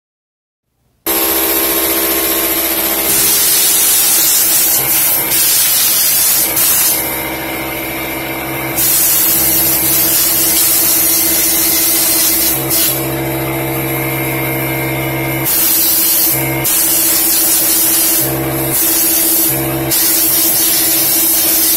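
Compressed air hissing from an air-hose nozzle in repeated blasts of a second or two with short breaks, blowing lint out of a serger's mechanism. A steady hum of several pitches runs underneath once the sound starts, about a second in.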